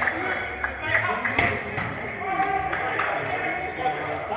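Players' voices shouting and calling to each other in a large indoor football hall, with a sharp knock about one and a half seconds in.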